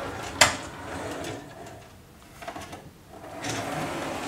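Sliding doors of a built-in wardrobe being moved along their track, with a sharp knock about half a second in and quieter rolling and rubbing after it.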